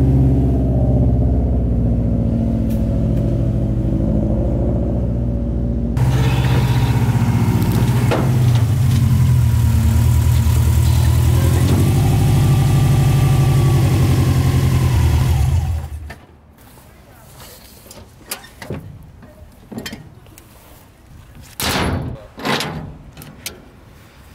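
Subaru Impreza's flat-four engine running at low speed as the car is driven slowly up onto a flatbed trailer, with a break in the sound about six seconds in. The engine stops about two-thirds of the way through, leaving a few short clicks and knocks as ratchet tie-down straps are handled.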